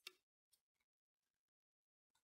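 Near silence with a few faint clicks from an archer handling an arrow on a wooden recurve bow as he nocks and draws: a sharper click at the very start, then fainter ticks.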